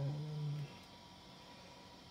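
A man's voice making a single held hum at one steady pitch, lasting about the first half-second, then faint room tone.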